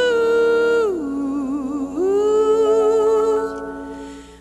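A 1970s pop recording with a voice holding long wordless notes. About a second in the voice drops in pitch and wavers, then rises again and holds another long note that fades out near the end.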